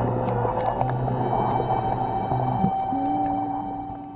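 Slow ambient background music of long held notes, moving to a new pitch every second or so and growing quieter near the end.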